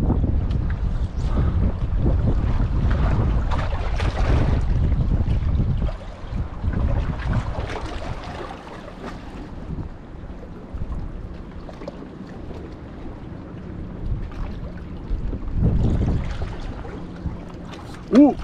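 Wind buffeting the microphone of a cap-mounted action camera, heavy for about the first six seconds and then easing off.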